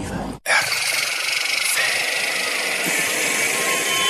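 A steady hissing, rushing noise that starts abruptly after a brief dropout and holds at an even level, with faint steady tones coming in near the end.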